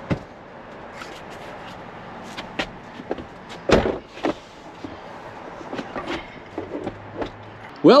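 Knocks, clicks and rustling of someone climbing into a pickup truck's cab and settling on the seat, with one louder thump about four seconds in.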